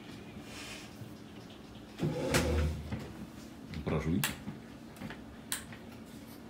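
Brief indistinct vocal sounds, about two and four seconds in, with a few light clicks.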